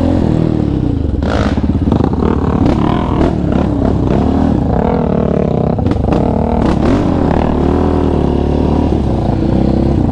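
Yamaha Raptor 700 sport quad's single-cylinder four-stroke engine, heard close up from the handlebars, its pitch rising and falling again and again as the throttle goes on and off over rough trail. Occasional brief knocks and rattles come through over the engine.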